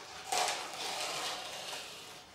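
Transfer paper being slowly peeled back off a light-tack self-adhesive masking film: a papery peeling noise that starts a moment in and slowly fades.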